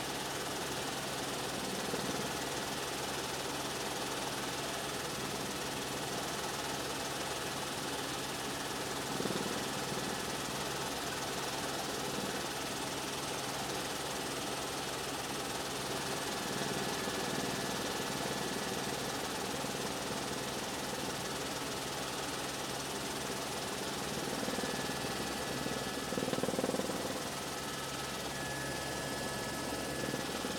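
Steady engine drone of the low-flying aircraft carrying the camera, a low pulsing hum that swells briefly twice.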